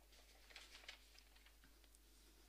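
Near silence: room tone with a few faint rustles and clicks, mostly in the first second.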